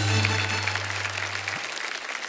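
Studio audience applauding over the tail of a short music sting, whose held low bass note cuts off about one and a half seconds in while the clapping fades.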